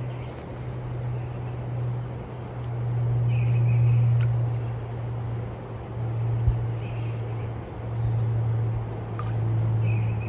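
A steady low hum that swells and fades in loudness over outdoor background noise, with a few faint, short bird chirps.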